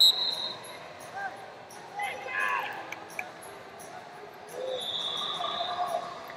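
Background of a busy wrestling hall: distant shouting voices from coaches and spectators, with a high steady tone at the very start and a longer one near the end.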